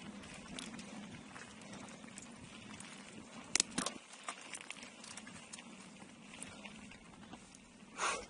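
Mountain bike rolling along a dirt forest trail: steady tyre noise on the dirt with the bike's parts clicking and rattling, and a louder clatter of knocks about three and a half seconds in.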